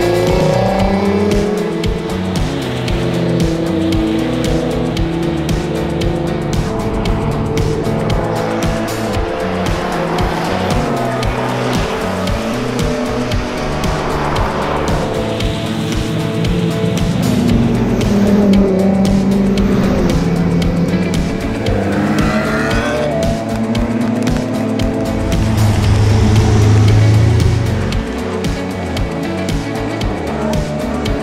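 Sports cars driving past one after another on a closed road, engines revving up and down through the bends, with background music under them.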